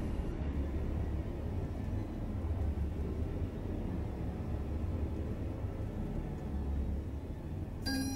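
Low, dark rumbling drone from a horror film score, holding steady without a beat. Right at the end a short, bright electronic chime sounds from a smart speaker, just before its voice answers.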